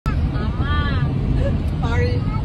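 Steady road and engine rumble inside a moving car's cabin, with a person's voice heard briefly twice.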